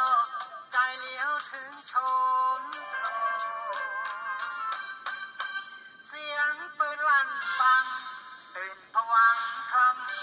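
A singer's voice singing a Thai song to a backing track with a steady percussive beat. The sound is thin and tinny, with almost no bass.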